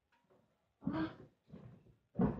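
Mostly quiet, with a short breathy vocal sound from a child about a second in and a fainter one shortly after.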